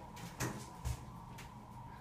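Quiet, steady hum inside a hydraulic elevator car, with two short, soft knocks about half a second and a second in.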